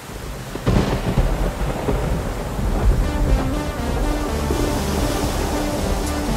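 Thunderstorm: a sudden loud clap of thunder about a second in, rumbling on under rain, with music notes entering from about halfway through.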